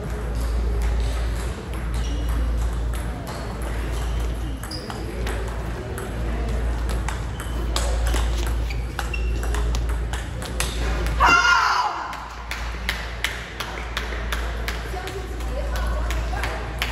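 Table tennis rally: a plastic ball clicking off paddles and the table at a quick, uneven pace over a steady low hall hum. A short, loud cry near the end of the rally is the loudest sound.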